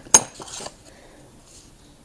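Two sharp clinks of small hard objects being handled or set down among the items in a box, the second louder, followed by brief faint rustling.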